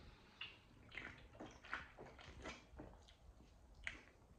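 Faint gulping and swallowing as a man drinks from a can, soft sounds every half second or so, with a short click near the end.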